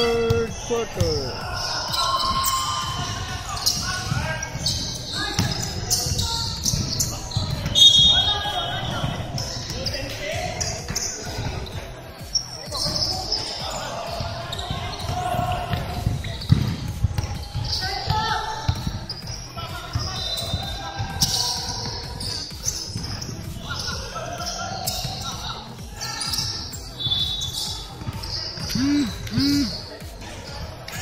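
Basketball bouncing on a hardwood gym floor during live play, with players' voices shouting across a large indoor hall.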